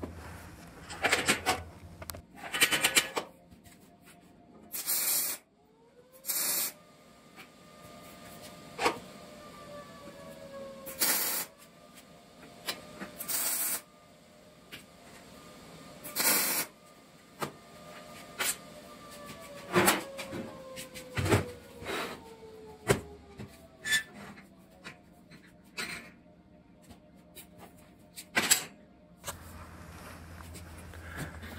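Steel sheet panels and clamps being handled on a steel welding table during fit-up: scattered metallic knocks and clanks, with several short, louder bursts a few seconds apart.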